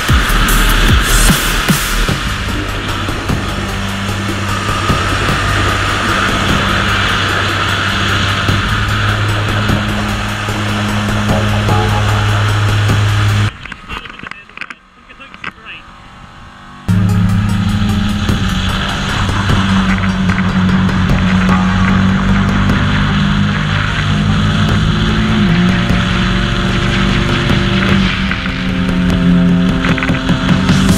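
Kawasaki Ninja 650's parallel-twin engine running at steady high revs under hard riding, its pitch stepping between gears, with heavy wind rush over it. About 13 seconds in it drops away sharply for some three seconds, then returns.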